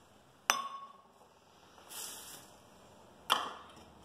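A stainless steel measuring cup clinks against a stainless steel mixing bowl about half a second in, ringing briefly. A soft rustle follows, and another sharp knock comes near the end.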